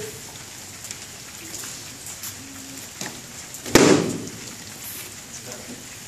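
A single sharp smack about four seconds in: a foam sword strike landing in sparring, over a low background of small clicks and shuffling.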